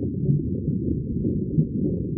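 Steady, muffled low rumble of underwater ambience, with nothing in the higher pitches.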